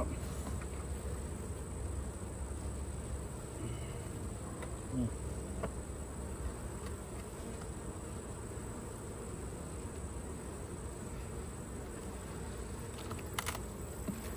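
Honey bees buzzing around an open beehive, a steady hum.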